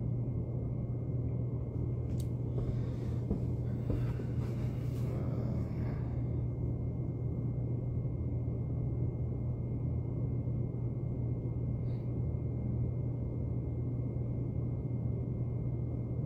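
Hotel-room air conditioner running with a steady low hum. The unit keeps running even when switched off. A faint rustle comes a few seconds in.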